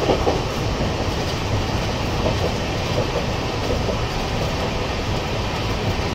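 Steady rumble and hiss inside a Shatabdi Express chair-car coach running at about 130 km/h, heard from within the passenger cabin.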